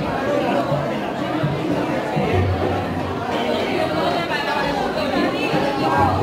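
Many people talking at once: crowd chatter of a seated congregation.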